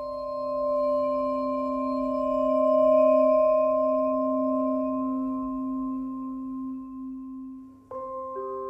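Instrumental chamber music: a held chord of several steady, ringing tones swells to its loudest near the middle and then fades away. New struck mallet notes enter right at the very end.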